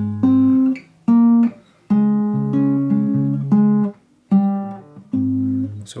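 Acoustic guitar finger-picked: the low E and G strings plucked together, then the D and G strings in turn, over simplified power-chord shapes in A-flat. Each group of notes rings briefly and is cut off, with short gaps between them.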